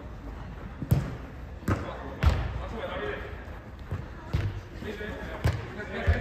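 A football thudding six times at irregular intervals as it is kicked and strikes the wooden perimeter boards of an indoor turf pitch. Each thud is sharp and echoes briefly in the large hall.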